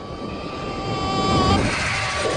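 Jet fighter engine on a film soundtrack: a steady high whine over a low rumble, building in loudness until about a second and a half in.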